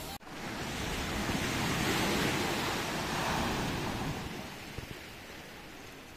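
Sea waves washing onto the shore: a steady rush that swells about two seconds in, then slowly dies away.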